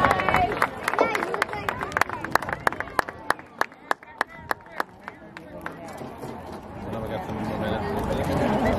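Steady rhythmic handclapping in unison, about three claps a second, over crowd voices. The clapping dies away about six seconds in, and crowd noise rises again near the end.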